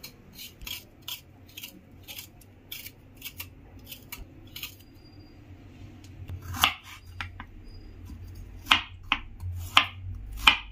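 Fresh ginger root being scraped and peeled by hand: a string of short, dry scraping strokes, about two a second. In the last few seconds a few louder strokes come as a knife starts cutting the ginger on a wooden chopping board.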